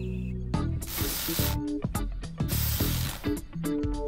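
Cartoon repair-work sound effects: two hissing bursts of about a second each, with rapid ratcheting clicks between and after them. Background music runs underneath.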